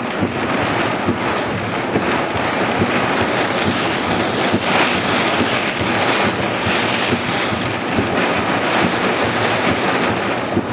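Heavy thunderstorm rain pouring down, a steady dense hiss with gusts of wind.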